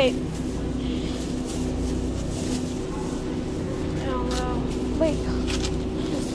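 Steady low hum of a supermarket's produce section, with faint voices of people talking about four and five seconds in.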